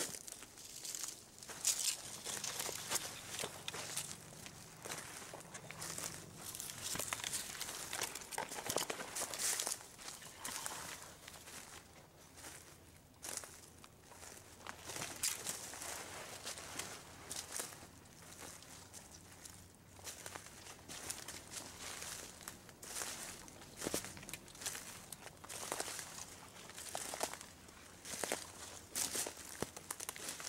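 Footsteps crunching through dry leaf litter and twigs on a woodland floor, an uneven run of steps, with the rustle of brushing past undergrowth.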